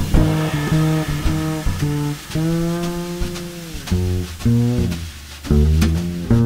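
Jazz double bass played pizzicato, a solo line of separate plucked notes with one long held note a little past the middle, joined by a few light percussion strokes near the end.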